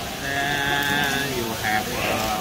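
A person's long drawn-out vocal exclamation, held for about a second with the pitch sliding down at the end, then a brief second voiced sound.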